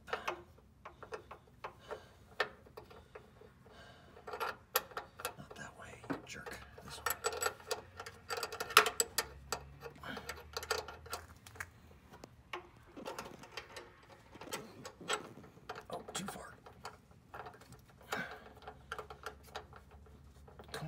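Irregular small metal clicks and taps as a wrench and fingers work a clutch hard-line fitting, trying to thread it into its connector. The clatter is busiest about seven to nine seconds in.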